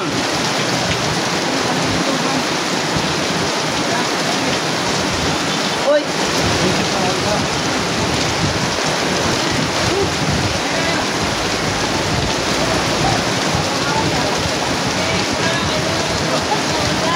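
Steady loud rushing noise with faint voices underneath, and a single short knock about six seconds in.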